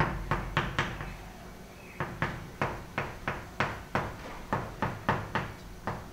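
Chalk tapping on a blackboard while characters are written: a run of short sharp taps, several a second, with a pause of about a second near the start.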